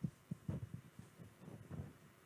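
Soft, irregular low thumps of a handheld microphone being handled, several within two seconds, over a faint room hum.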